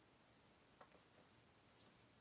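Near silence: room tone, with a faint click a little under a second in.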